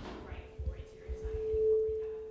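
Microphone feedback through the room's sound system: a single steady ringing tone that swells to its loudest near the end.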